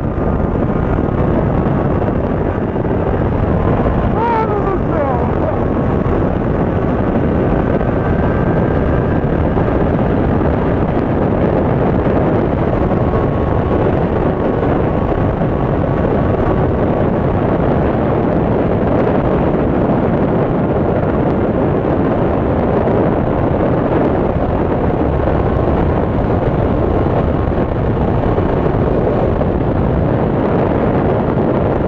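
Honda Hornet 600 inline-four engine running at steady road speed, heard from the rider's seat under heavy wind rush on the microphone, with a short falling tone about four seconds in.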